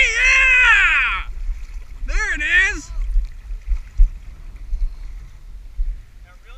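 Loud wordless voice calls, each swooping up and down in pitch, ending about a second in, with a second short bout of the same calls about two seconds in.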